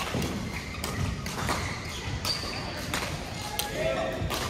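Badminton play: repeated sharp hits of rackets on the shuttlecock and shoes squeaking on the court floor, with a short squeak about two seconds in, over a background of voices.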